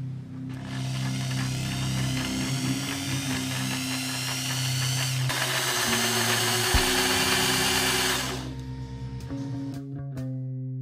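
Corded electric hand drill boring a hole into a block of wood. The motor whine starts about half a second in and rises in pitch as it spins up, then cuts off about eight seconds in. Background music plays underneath.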